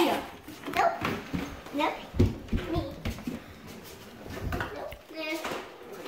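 Young children's voices in short non-word exclamations, with low thuds and knocks of kitchen drawers and cabinet doors being opened and shut.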